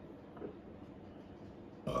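A loud, abrupt burp from a young man near the end, after a stretch of quiet room tone.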